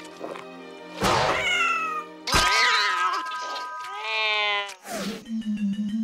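Cartoon character's yowling, cat-like cries over background music: a loud cry about a second in, another louder one a little later, then a long cry falling in pitch before a steady low note of the music takes over.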